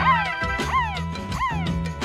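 Turntable scratching of a pitched tone over a beat with a steady bass line: each stroke sweeps sharply up in pitch and slides back down, in quick repeated strokes cut in and out by a MIDI note fader.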